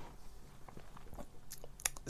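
A few faint, short mouth clicks and lip smacks close to the microphone in a pause between phrases, after a soft breath.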